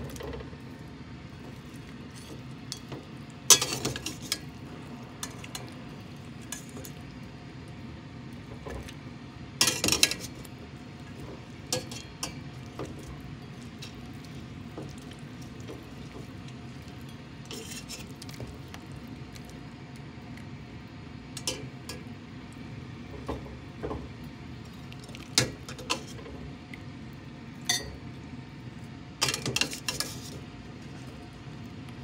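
Metal slotted skimmer clinking and scraping against the rim of a stainless stockpot and a ceramic pot, with some water sloshing, as boiled chicken pieces are lifted out of the cooking water. Scattered clanks over a steady low hum, the sharpest about three and a half seconds in and another about ten seconds in.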